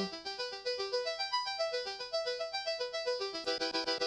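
Martinic AX73 software synthesizer's arpeggiator playing a fast run of short notes that hop about in pitch in its Improv pattern. Near the end it switches to Chord mode and repeats full chords in the same quick rhythm.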